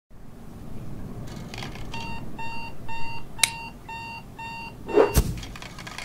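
A digital alarm clock beeping, six short pitched beeps about two a second, with a sharp click partway through. The beeping stops, then a swish and a hard thump follow about five seconds in, as a hand slaps the clock.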